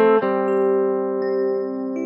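Closing music on a plucked string instrument: a chord struck just after the start rings on and slowly fades.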